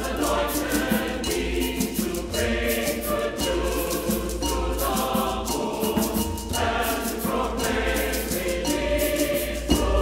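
Choir and congregation singing with instrumental accompaniment, with light percussion keeping a steady beat.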